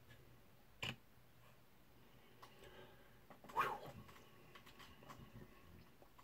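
Faint small handling sounds while a miniature and paintbrush are worked by hand: a sharp click about a second in, a louder short sound about halfway through, and light scattered ticks.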